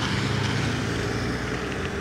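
A car driving past close by on the highway: steady engine and tyre noise.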